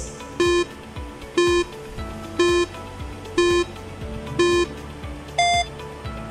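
Countdown timer sound effect: five electronic beeps about a second apart, then one shorter, higher-pitched beep, over background music.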